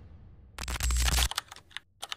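Keyboard-typing sound effect for on-screen text: a short dense rush of noise, then a quick, uneven run of sharp key clicks.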